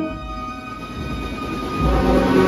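Street marching band with brass and drums: a loud held brass chord breaks off at the start, leaving a quieter, noisy stretch with faint lingering tones. Low drum beats come in near the end as the band picks up again.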